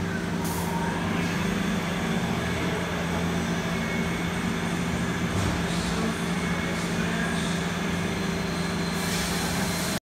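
Robot-tended Doosan Puma 2100SY CNC lathe cell running with a steady machine hum. Short bursts of compressed-air hiss come about half a second in, around five and a half seconds in, and again near the end.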